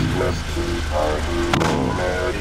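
Music with a voice singing over a low steady hum. About one and a half seconds in, a single sharp bang as the race car's driver door is shut.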